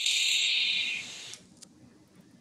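Steady hiss of air drawn through a handheld vape as someone takes a drag, lasting about a second before fading out.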